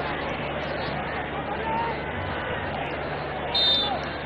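Stadium crowd noise heard through a TV match broadcast: a steady hubbub of the crowd, with a short high-pitched whistle near the end.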